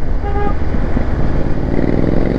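Motorcycle engine and wind rumble while riding, with a short horn beep just after the start. From about halfway through, a Triumph Speed Twin's parallel-twin engine accelerates, its exhaust note rising in pitch, a sound the rider calls sweet.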